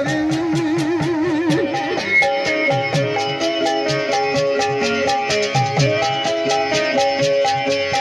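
Live Pothwari folk music: a long sung note with wide vibrato at the start, over a stepping melody and a steady drum beat, with the instruments carrying on alone after it.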